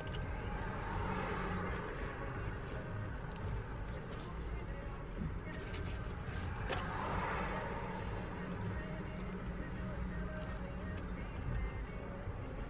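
Steady low hum inside a parked car, with a few soft crinkles of plastic takeaway bags being handled.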